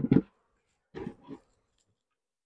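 Wooden beehive equipment knocking as it is handled: two sharp, hollow knocks at the start, then a softer cluster of knocks about a second later.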